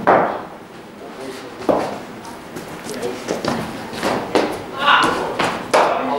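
A cricket ball striking the bat with a sharp knock right at the start, echoing in a large indoor hall. A second thud follows about a second and a half later, then several lighter knocks and faint voices.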